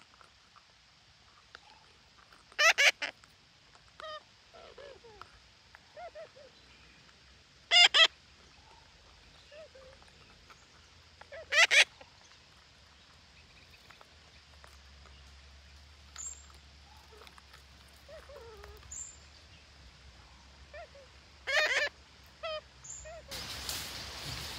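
Parakeets calling: four loud, harsh squawks spaced several seconds apart, with softer short chirps in between.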